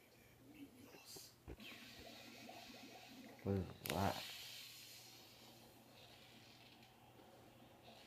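Faint sound from a television playing in a small room, with a soft thump about a second and a half in. A man's voice briefly exclaims midway.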